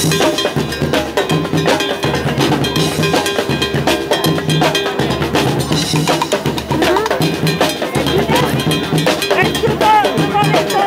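A drum troupe playing a fast, driving rhythm together on drums, including a set of tenor drums, with regular low bass-drum beats under rapid stick strokes.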